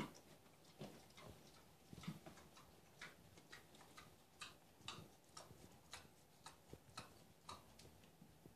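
Faint, sharp, irregular clicks, about two a second, over near silence.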